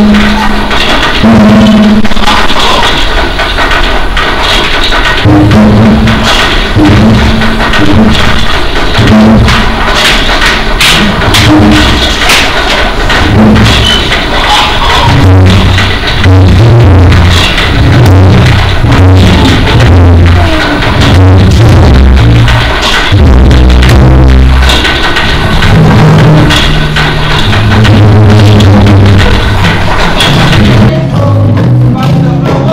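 Live music from a small ensemble: a low bass line moving from note to note, with sharp percussion hits throughout.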